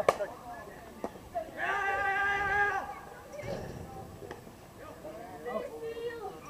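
A softball bat striking the ball with one sharp crack, followed about a second and a half later by a long held shout from someone on the field.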